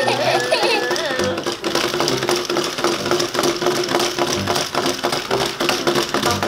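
Small battery-powered walking toy pig and dog running across a tabletop, their wind-along gear mechanisms clicking and rattling quickly and steadily. A child laughs during the first second or so.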